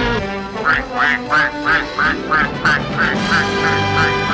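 A goose honking over and over, about three honks a second, beginning under a second in, over band music.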